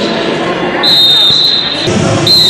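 Voices echoing in a large hall, with a steady high whistle-like tone lasting about a second. Near the end there is a thud as a wrestler is taken down onto the mat.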